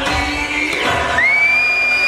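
Dance music whose beat drops out about halfway through, while a crowd of adults and children cheers and shouts. Near the end comes one long high-pitched call held for about a second.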